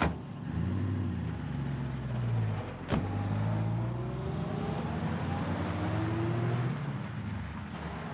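Vintage sedan car doors slamming shut, one at the start and another about three seconds in. In between and after, the cars' engines are heard pulling away, their pitch rising and falling as they move off and fading near the end.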